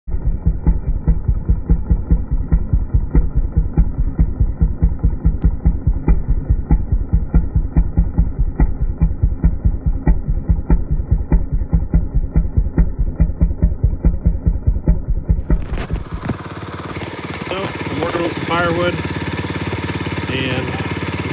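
A muffled chainsaw engine, plausibly the Homelite XL-700's 77cc two-stroke, pulsing heavily about four times a second. About 16 s in it gives way to clear outdoor sound and a man's voice.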